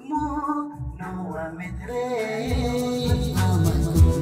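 A man singing over instrumental backing music. About halfway through, a beat with bass comes in and the music grows louder.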